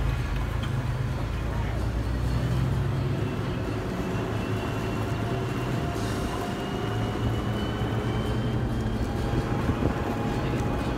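Off-road vehicle driving slowly on a dirt trail, heard from inside the cab: a steady low engine and tyre rumble, with a faint tone that rises slowly from the middle on.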